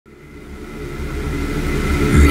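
A low, rumbling intro sound effect fades in from silence and swells steadily louder, with faint steady high tones held over it.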